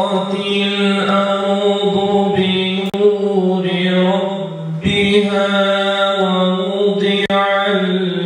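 A man's voice in slow melodic religious chanting, sung into a handheld microphone. He holds long sustained notes in phrases a few seconds long, with short breaks about two and a half seconds and five seconds in.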